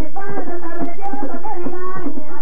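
Traditional Colombian tambora music played live: a singer's voice over the steady, rhythmic beating of tambora drums.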